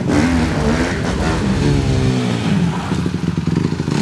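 Motorcycle engine revving, its pitch sliding down and back up, then settling into a fast, even pulsing near the end.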